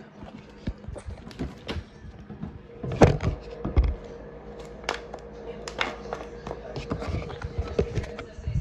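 Irregular knocks, thumps and rustles of walking and of handling a plastic water bottle, loudest about three seconds in, with a faint steady hum from then on.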